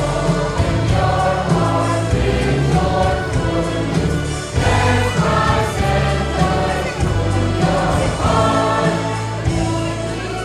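Mixed school choir of boys and girls singing a song in parts, with deep low notes under the melody. There are brief breaths between phrases, about four and a half and seven seconds in.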